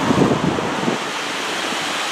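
Steady rushing outdoor noise with wind on the microphone, and faint voices in the first second.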